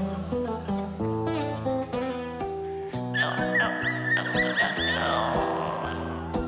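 Acoustic guitar played solo, picking notes. About three seconds in, the bass notes stop and a high wavering wail sounds over the guitar for about two seconds.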